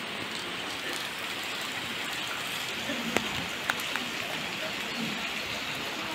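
Steady rain falling on a wet paved lane: an even hiss with a couple of louder drop ticks a little past halfway.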